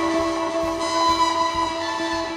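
Live free-improvised jazz: a saxophone holds a steady, sustained note over irregular drum hits and electric guitar.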